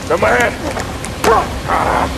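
Three short yelping cries, each rising and falling in pitch.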